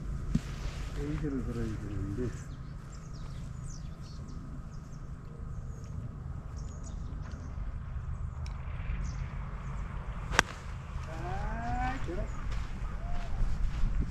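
Golf club striking a ball off the tee: a single sharp crack about ten seconds in, over a steady low rumble.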